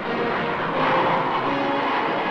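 Jet airliner's engines roaring as it climbs away after takeoff, a dense steady rush that swells about halfway through.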